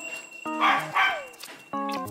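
Small white dog barking at the front door as someone arrives home, two short barks about half a second apart.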